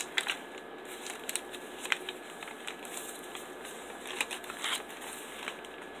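Paper pages of a handmade junk journal rustling as they are handled and turned, with a few sharper crackles and snaps scattered through.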